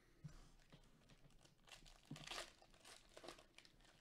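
Foil wrapper of a Panini Chronicles football card pack being torn open and crinkled, faint, in short spells that are loudest about two seconds in.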